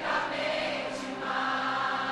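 Soft Catholic worship music with sustained choir-like voices holding long notes, in a quiet passage between sung lines.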